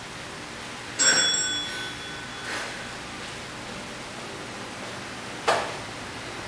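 A single bell-like ding about a second in, ringing out and fading over about a second: a workout interval timer's signal marking the end of one exercise and the start of the next. A short knock near the end.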